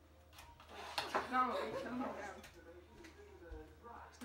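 A boy's voice talking briefly, strongest in the first half, with a few faint clicks of items being handled on a kitchen counter.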